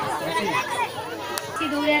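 Several people talking over one another, with a single sharp click about one and a half seconds in.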